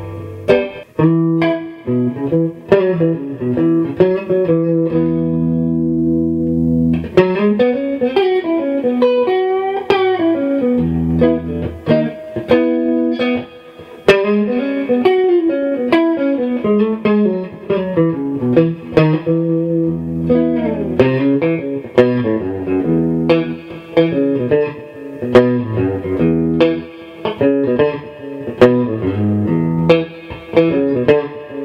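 PRS SE Silver Sky electric guitar playing melodic single-note lead lines with string bends. About five seconds in there is a held chord lasting roughly two seconds.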